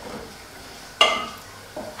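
A wooden spoon stirring in a steel pot, knocking once against the pot about a second in with a brief metallic ring that fades away. Under it there is a faint steady hiss from the cooking pot.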